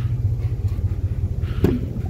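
2001 GMC Yukon's Vortec 5.3 V8 idling with a steady low rumble. A sharp click comes about a second and a half in as the rear door latch is pulled open.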